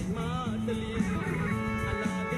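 Music: a song with guitar over a steady bass line, a pitch-bending melodic line early on giving way to held chord tones about halfway through.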